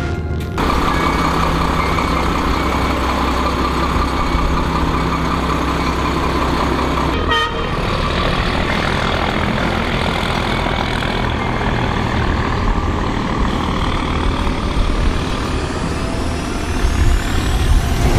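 Dakar rally truck's diesel engine running steadily while the truck stands still, with a brief break about seven seconds in. Over the last few seconds a high whine rises steadily in pitch.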